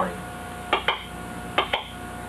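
Syncrometer's speaker popping and crackling as the probe touches the wet handhold: a few short pops in two quick pairs, over a steady electrical hum. The popping is the sign that the home-built unit's circuit is working.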